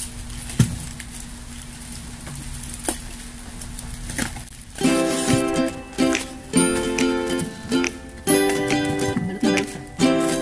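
Handling of a taped cardboard parcel, with a few sharp clicks, then background music with plucked-string notes comes in about halfway through and is the loudest sound.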